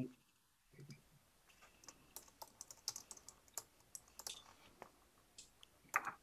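Faint computer keyboard typing: a quick, irregular run of key clicks picked up over a video-call microphone.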